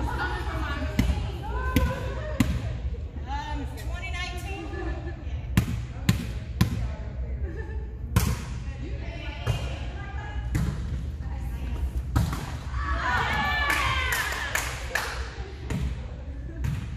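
A volleyball being played back and forth in a rally: a dozen or so sharp, irregularly spaced smacks of the ball, echoing in a large gymnasium, with players' voices calling out, loudest near the end.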